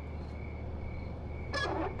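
Night ambience of crickets chirping in a steady pulse, about twice a second, over a low steady hum. About one and a half seconds in there is a short rustling scrape.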